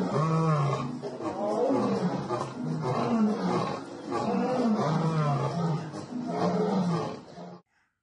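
A lion roaring: several deep roars in a row, swelling and dipping, that stop suddenly near the end.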